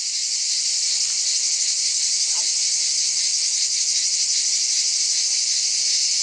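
Steady, high-pitched chorus of insects buzzing without a break.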